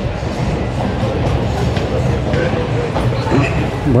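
Busy outdoor town-square ambience: background voices and some music over a steady low rumble.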